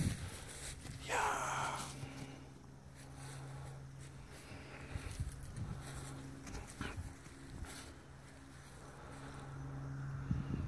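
Belgian Malinois dogs moving about in grass, with a short dog sound about a second in, over a steady low hum.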